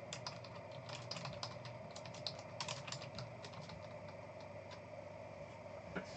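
Computer keyboard typing: quick runs of faint key clicks through the first three seconds or so, thinning out to scattered taps after, over a faint steady hum.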